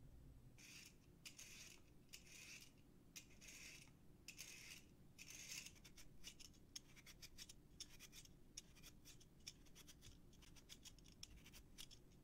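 Faint, repeated scraping strokes of a metal julienne peeler shredding a carrot into thin strips on a wooden cutting board. The strokes are slower and longer at first, then quicker and shorter from about halfway.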